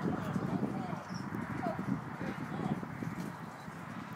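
Indistinct chatter of several people's voices, steady throughout, with a few faint short squeaky glides above it.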